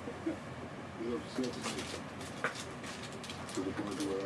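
Faint, low, muffled speech in the background in short stretches, with scattered light clicks and rustles.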